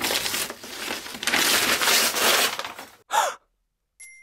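Wrapping paper being ripped off a boxed gift, a rough tearing and crumpling for about three seconds. It ends in a brief sigh with a falling pitch.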